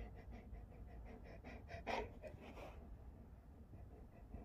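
A husky panting quietly in quick, even breaths, about six a second, with one louder huff about two seconds in.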